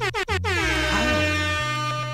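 Air horn sound effect over a reggae beat with a stepping bassline: a few quick hits, then a long horn blast whose pitch falls at first and then holds.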